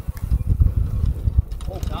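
Off-road golf cart spinning one tire in deep snow, heard as an uneven low rumble, with a short exclamation near the end.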